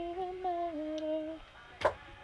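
A woman humming a tune in held notes that step up and down, stopping about three-quarters of the way through. A single sharp click follows near the end.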